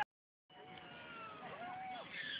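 After a hard cut to dead silence, faint arching, whistle-like tones rise and fall over a steady hiss from about half a second in. These are the eerie underwater sound effects that open a film soundtrack, played through outdoor cinema speakers.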